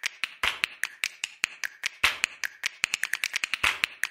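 A rapid, uneven run of sharp, dry clicks, about eight a second, with the loudest about two seconds in and again near the end: an edited-in sound effect laid over an animated end card.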